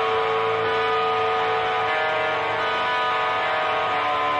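Live rock band playing without vocals: loud distorted electric guitar holding a sustained chord, with one steady ringing note over it.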